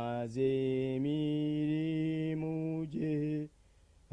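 A man chanting in a low voice, holding long, steady notes that step up or down in pitch about once a second, with short breaths between. The chant stops about half a second before the end.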